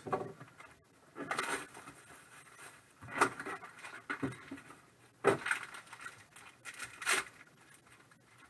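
Hands handling trading card packaging: a pack scraped out of a cardboard box and a foil card pack rustling and crinkling, in about five short bursts.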